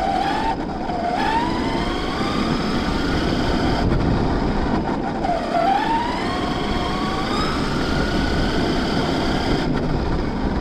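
Onboard sound of a large radio-controlled monster truck driving: a whine from its motor and gears that dips and then rises with speed about a second in and again around the middle. Under the whine runs a steady rumble of the tyres on the road surface.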